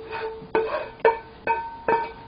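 A wooden spatula knocking and scraping in a nonstick frying pan as stir-fried vegetables are pushed out onto a plate: about five sharp knocks roughly half a second apart, each leaving a short ring at the same pitch.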